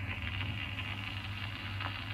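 Surface hiss and a few faint clicks of an old 1940s recording, over a steady low hum.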